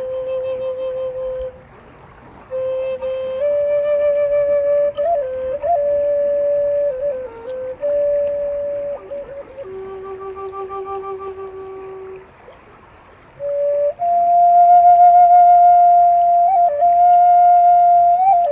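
Woodsounds P36C Native American flute playing a slow solo melody of long held notes, with quick ornamental flicks between them and a slow waver on the later notes. It stops twice for about a second, for breath, once near the start and again about two-thirds of the way through.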